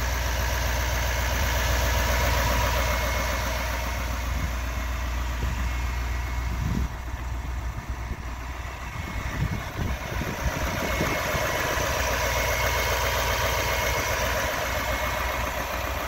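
Duramax 6.6 L turbo-diesel V8 idling steadily, heard with the hood open. The sound grows quieter for a few seconds in the middle, with some irregular low thumps.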